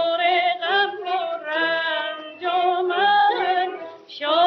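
A woman singing a Persian tasnif in a 1940s recording, holding notes with a wavering vibrato in phrases broken by short breaths.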